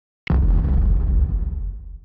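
Logo-intro sound effect: a sudden deep boom about a quarter second in, followed by a low rumble that fades away over the next two seconds.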